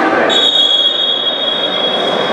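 Referee's whistle: one long, steady high blast that starts about a third of a second in and is held to the end, over the murmur of a sports hall.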